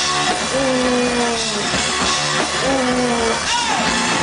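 Loud live rock from a guitar-and-drums duo: a drum kit pounded hard with washing cymbals under distorted electric guitar, with a falling note repeated about once a second.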